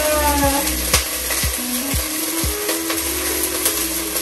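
Background music with a steady beat, about two thumps a second, over a continuous sizzle of chicken frying in an enameled cast-iron Dutch oven.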